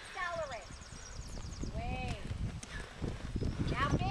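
Horse's hoofbeats at the canter on sand arena footing, dull knocks that grow louder near the end as the horse comes up to a jump.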